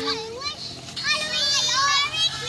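Young children talking and calling out over one another as they play, with high-pitched shouts in the second half.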